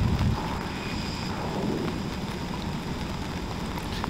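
Steady outdoor background noise from an outdoor ambience recording: a constant low rumble with hiss above it, the recording's machine noise.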